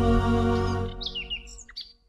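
Sustained jingle music ending about a second in, followed by a short flurry of quick, high bird chirps, a tweet sound effect.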